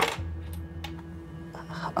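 A low, steady background music drone, with a few light metallic clinks and rattles as keys and small objects are picked up from a cluttered drawer.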